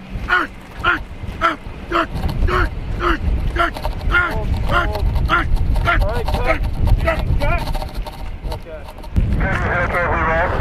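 A man's short, effortful grunts, about two a second, as he strains to pull a line of cars by a harness, over a steady low rumble. Near the end another voice starts.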